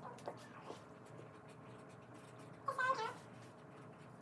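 Faint scratching and tapping of pens writing on paper, and about three seconds in a short, wavering, high-pitched vocal call, the loudest sound.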